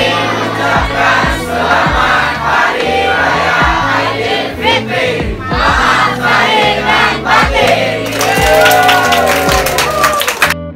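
A large group of people shouting and cheering together, swelling into clapping over the last couple of seconds, over background music with a steady bass line.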